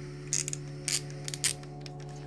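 Phillips screwdriver turning a small screw out of a telescope mount's metal arm, giving about five sharp clicks spread over a second and a half.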